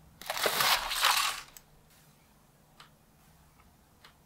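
Cardboard ready-meal packaging handled close to the microphone: a rustling, scraping burst lasting just over a second, followed by a faint click near the three-second mark.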